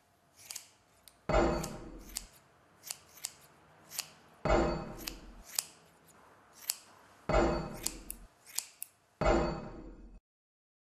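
Scissors snipping hair in sharp, quick clicks, about a dozen of them, broken by four sudden heavy hits that each ring out for about a second.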